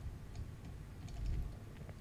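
Faint, scattered ticks of a computer mouse scroll wheel as a web page is scrolled, over a low steady background hum.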